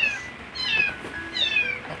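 A cat mewing: two high, short calls, each falling in pitch, about a second apart.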